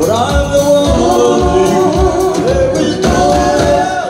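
Live reggae band playing, a melody line gliding over a steady bass and drum beat.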